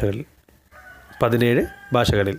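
A man's voice: a brief sound right at the start, then a short drawn-out syllable about a second in, with pauses either side.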